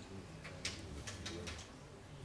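A few faint clicks of a long metal bayonet being handled against a replica Lorenz rifle as it is offered up to the muzzle, over a low room hum.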